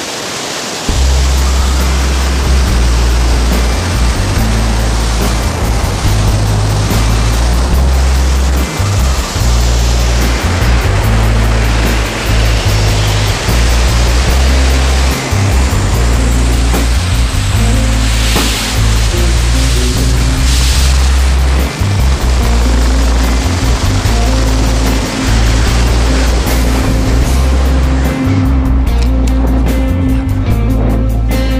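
Music with a heavy, loud bass line, coming in sharply about a second in, over a steady rush of wind noise.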